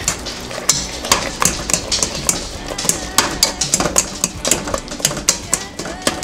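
Wire potato masher pressed repeatedly through soft mashed potatoes, its metal head knocking against the sides and bottom of the pot in a quick, irregular run of clicks and clanks, several a second.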